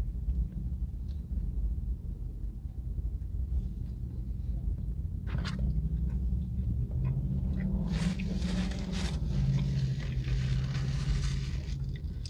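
Low steady rumble inside a parked car, with faint chewing of a bite of chili cheese hot dog. From about the middle a held hum joins in, and a hiss swells for a few seconds near the end.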